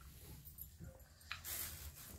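Faint crackling of a crisp pani puri shell being broken open with the fingers, in brief noisy bursts from about a second and a half in, over a low steady room hum.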